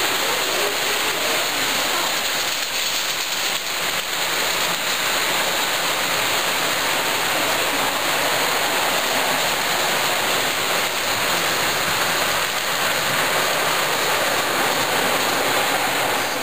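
Steady, even rushing din of O scale model trains running on the layout's track.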